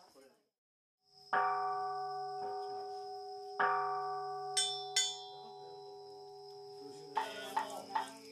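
Buddhist temple bowl bell (rin) struck and left ringing with a long, slowly fading tone: two strong strikes with a lighter one between them, then two brighter, higher-pitched strikes in quick succession. A sutra chant starts near the end.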